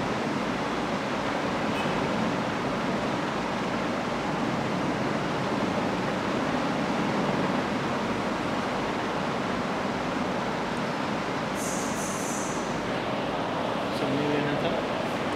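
Steady, even background hiss with no speech, and a brief higher hiss about twelve seconds in.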